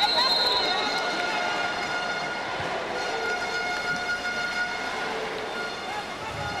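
Steady crowd noise filling a volleyball arena, with faint voices in it and a high, thin steady tone in the first second.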